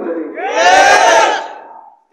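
A large crowd of men shouting out together in one loud call, starting about half a second in and dying away over about a second.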